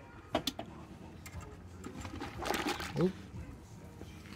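Two quick clicks as the BrewZilla's recirculation pump is switched on, then wort starting to pour back through the whirlpool arm and splash into the kettle about halfway through.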